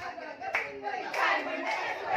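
Several women's voices talking over one another, with a few hand claps.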